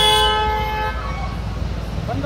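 A vehicle horn sounding one steady blast that cuts off about a second in, over a low rumble of street traffic.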